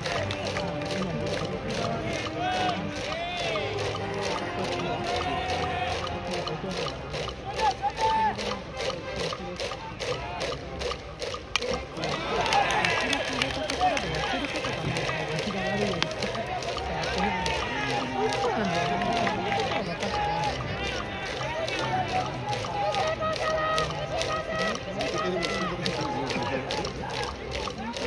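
Baseball cheering section in the stands: voices chanting and calling over a steady drumbeat, about two to three beats a second.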